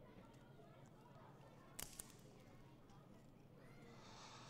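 A bundle of thin dry twigs cracking twice in a boy's hands about two seconds in, as he tries to snap them, against near silence.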